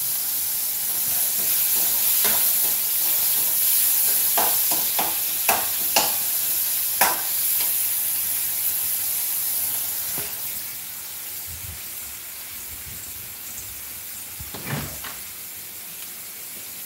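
Food sizzling in a frying pan as a steady hiss, with several sharp clicks and knocks of utensils being handled. The sizzle drops noticeably quieter about two-thirds of the way through.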